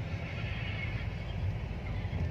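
Low, steady rumble of a car driving, heard from inside the cabin, with a wavering higher-pitched sound over it in the first second or so.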